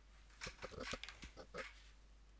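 A plastic marker pen set down on a wooden desk: a short run of faint, irregular knocks and clatters.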